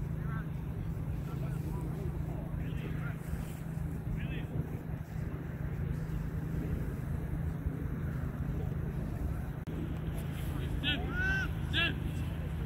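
Outdoor field ambience: a low steady rumble with faint distant voices, and two short shouted calls near the end.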